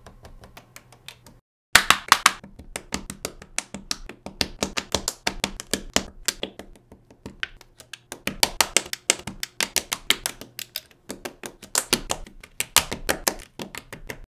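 Plastic LEGO bricks clicking and snapping together in a fast run of many sharp clicks a second, the sound of a stop-motion speed build. It breaks off in silence for a moment about one and a half seconds in, then resumes louder.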